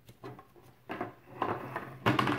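A deck of oracle cards being shuffled by hand: a run of irregular papery riffles and taps that grows louder through the second half.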